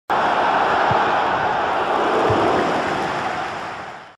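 Steady rushing noise of an intro sound effect, with two faint low thuds, fading out near the end.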